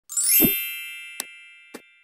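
Logo-intro sound effect: a thump with a quick rising shimmer, then a bright bell-like chime ringing out and slowly fading. Two short clicks come about a second in and again near the end.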